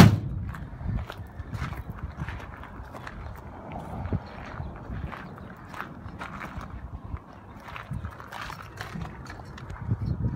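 Footsteps crunching on gravel at a walking pace, about one step every second, after a single loud knock right at the start.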